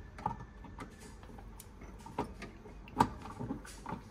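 Scattered light clicks and taps of a screwdriver working at a plastic wiring box for underfloor heating, about half a dozen, the sharpest about three seconds in.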